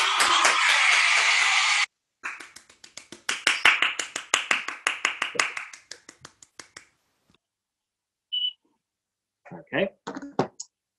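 A few people at home clapping and cheering over a video-call connection: a loud burst for about two seconds that cuts off abruptly, then quick hand claps that die away about seven seconds in. A short high beep comes near the end.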